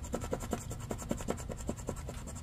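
Scratch-off lottery ticket being scraped with a poker-chip-style scratcher: quick, short strokes, about seven a second, rubbing off the coating over the winning numbers.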